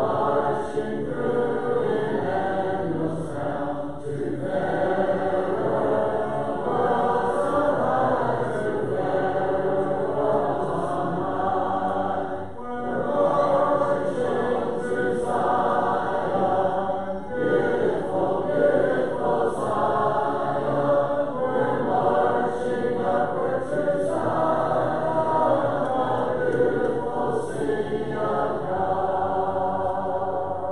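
Congregation singing a hymn a cappella, many unaccompanied voices together in sustained phrases with brief breaks between lines.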